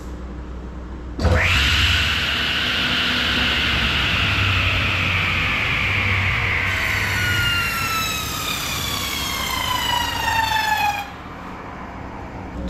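Table saw starting with a sudden high whine and running as a block of closed-cell urethane foam is fed through it on edge, cutting guideline kerfs into the edges. The whine sinks slowly in pitch and cuts off suddenly near the end.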